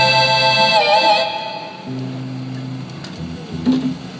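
A live band's closing chord held on an electronic keyboard, with a brief pitch wobble about a second in, then dying away. A low held note follows briefly near the middle.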